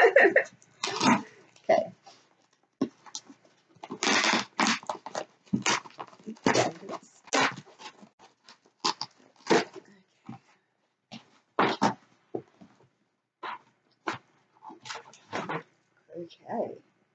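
A mailed parcel being torn open by hand: irregular ripping and crackling of the packaging in short strokes with pauses between.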